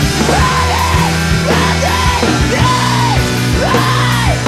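Rock band recording: bass and guitars holding sustained chords under a yelled vocal line that arches up and falls back in short repeated phrases.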